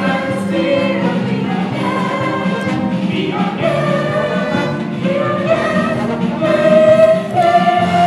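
Live stage musical number: a large cast singing together in chorus over musical accompaniment.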